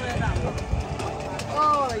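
People talking, with a low rumble in the first second and a voice clearly heard near the end.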